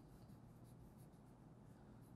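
Faint scratching of a pencil drawing strokes on paper.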